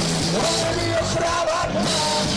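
A live hard rock band playing: electric guitar, bass guitar and drum kit together at a steady loud level. A long held, slightly wavering note sounds over the band through the middle.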